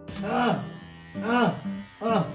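Corded electric hair clippers buzzing steadily as they cut through hair, with two short rising-and-falling vocal calls over the buzz.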